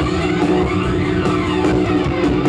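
Live rock band playing an instrumental passage: electric guitars, bass guitar and drum kit, with no vocals.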